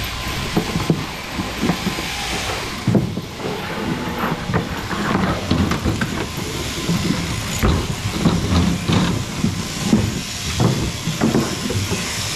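Several electric sheep-shearing machines running at once, a steady mechanical buzz and hiss, with irregular thumps and knocks from the wooden shearing board as shearers and sheep move on it.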